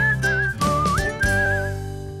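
TV show ident jingle: a whistled melody with a warble, sliding up about a second in, over bass and chords, ending on a held chord that starts to fade near the end.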